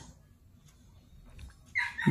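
Near silence with a few faint ticks of a ballpoint pen writing on paper.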